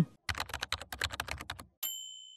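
Typewriter sound effect: a fast run of key clacks, about a dozen a second, for roughly a second and a half, then a single bright bell ding that rings on and fades.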